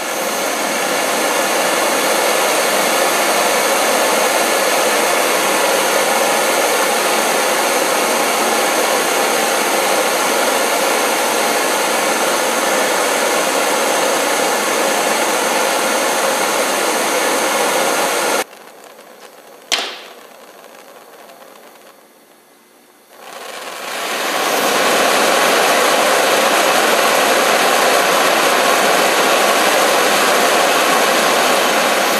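Homemade propane burner, a brass orifice pipe inside a stainless-steel tube, running with a steady, loud rushing hiss of gas and flame. About two-thirds of the way through it cuts off suddenly, and a single sharp click follows a second later. A few seconds after that the burner comes back on, building up over about a second to the same steady rush.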